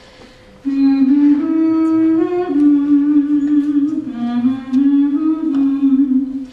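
A woman humming a slow, wordless melody, long held notes stepping up and down in pitch; it starts about two-thirds of a second in after a brief lull.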